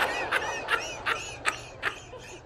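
High-pitched, squeaky laughter from a person watching stand-up comedy, in about five short breathy bursts a little under half a second apart, fading toward the end.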